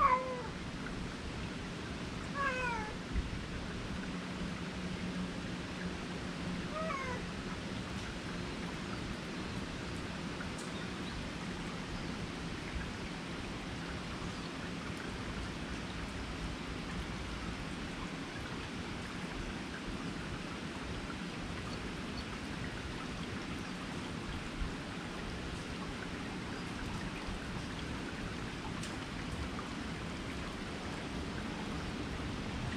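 Domestic cat meowing three times in the first several seconds, each a short call that falls in pitch, over a steady hiss of rain.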